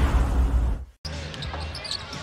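A broadcast transition sound effect, a rushing noise with a deep low rumble, fades out about a second in. After a brief silence, arena ambience follows, with a basketball being dribbled on the hardwood court.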